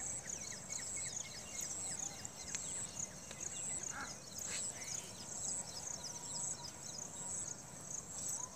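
Outdoor wildlife ambience: a high, steady, pulsing insect trill with scattered chirping bird calls, and one brief lower call about four seconds in.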